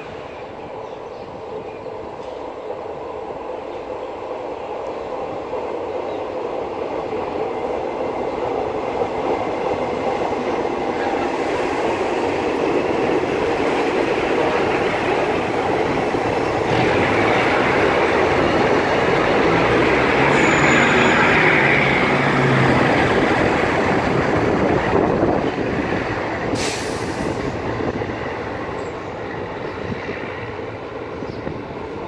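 Two-car Hitachi RHN diesel multiple unit pulling out and passing close by: its underfloor diesel engines and steel wheels on the rails grow steadily louder to a peak about two-thirds of the way through, then fade as it moves away. A high wheel squeal rises around the loudest point.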